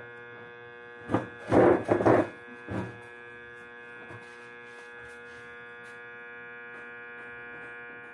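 Homemade growler armature tester humming steadily on 220 V mains, with a starter-motor armature seated in its core. A few short, louder handling noises come about one to three seconds in.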